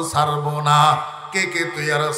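A man's voice chanting a prayer of supplication into a microphone, in long held notes.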